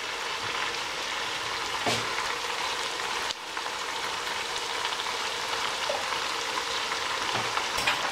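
Sliced onions sizzling steadily in hot oil in a stainless steel pot, with a couple of faint knocks.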